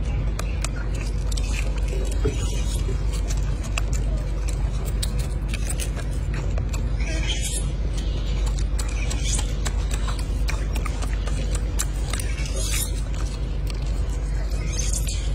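Golden snub-nosed monkey eating a hard-boiled egg: many sharp clicks and short crackles of eggshell and chewing, over a steady low rumble.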